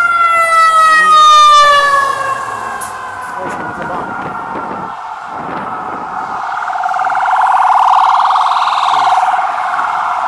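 Emergency vehicle sirens on a city street: a loud pitched siren tone slides steadily down in pitch over the first two seconds, then a second siren warbles rapidly and swells louder in the last few seconds.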